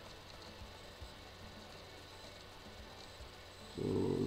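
Faint room tone: a steady low hiss with a thin electrical hum and a few faint low knocks, before a voice starts near the end.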